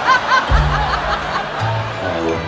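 Laughter in short, quickly repeated bursts near the start, over low, steady amplified music in a large concert arena.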